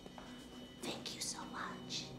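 A voice whispering briefly, a few airy breaths of words in the second half, over a faint low steady tone.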